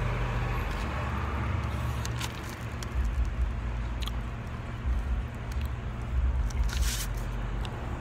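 A person chewing a bite of pizza close to the microphone, with a few small clicks, over a steady low outdoor rumble.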